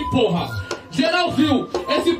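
A rapper's voice through a hand-held microphone and PA, rapping with the beat cut out; the deep bass of the beat drops away and returns just after.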